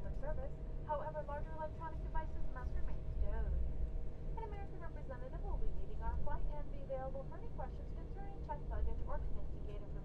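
Airliner cabin during the landing rollout: a steady low rumble from the aircraft with a thin, constant whine, under the talk of other passengers.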